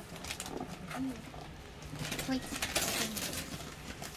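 Paper rustling and crinkling in short spells as packing sheets are pulled out of a cardboard box. The longest spell comes near the end.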